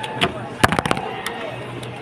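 A quick run of sharp plastic clicks and knocks, loudest and densest about half a second to a second in, from a Pyraminx puzzle being turned fast and set down at the end of a speed solve.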